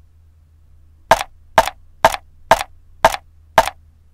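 Cleaver chopping down onto a wooden cutting board: six sharp chops about half a second apart, starting about a second in.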